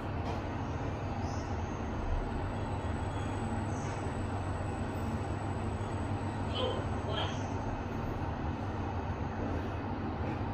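Schindler 5000 machine-room-less passenger lift travelling down one floor at 1 m/s: a steady low hum and rumble of the moving car.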